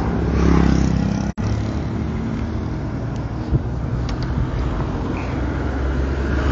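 A motor vehicle's engine runs steadily as it drives along a road, a low hum with wind and road noise over it. The sound cuts out for a moment about a second in.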